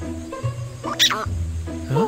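Cartoon background music with a bass line of repeated held notes, and a short squawk from a cartoon ostrich about a second in. A quick rising call follows near the end.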